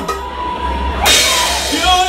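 Live band music: bass guitar under a held note, with a cymbal crash about a second in that rings on to the end.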